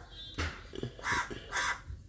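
A crow cawing: two short, harsh caws about half a second apart in the second half, with a shorter call shortly before them.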